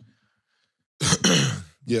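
A man clearing his throat about a second in, after a short silence, loud and rough, followed by the start of his speech.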